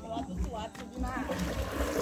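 Water splashing as a person wades quickly through a shallow river, starting about a second in, with faint voices in the background.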